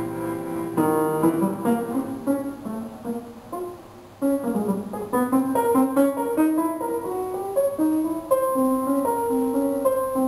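Bandoneón and piano duo playing a tango: sustained reedy melody notes over piano. There is a brief quieter moment about four seconds in before the playing comes back in strongly.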